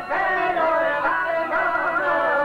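Albanian folk song performed live: a violin plays the melody alongside a çiftelia, the two-stringed long-necked lute, while a man sings.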